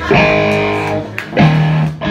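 Amplified electric guitar striking two notes or chords, one just after the start and another about a second and a half in, each left to ring for under a second.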